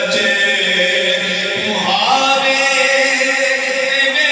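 A man's voice singing an Urdu naat (devotional poem) in long held notes, with a slide upward in pitch about halfway through.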